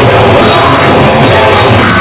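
Hardcore punk/thrash band playing live and loud: distorted amplified electric guitar over a pounding drum kit.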